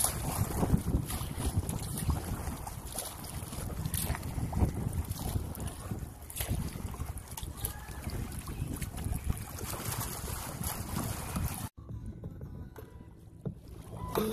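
Wind buffeting the microphone over water splashing and lapping around a kayak hull while paddling. The wash drops quieter after a cut about two seconds before the end.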